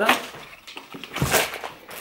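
Plastic grocery packaging handled and put down: a few short rustles and a knock about a second in.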